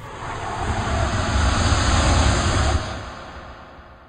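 Roaring jet-engine sound effect that swells to a peak about two seconds in, then fades away.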